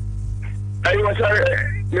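A voice speaking over a telephone line for about a second, starting a little under a second in, above a steady low hum.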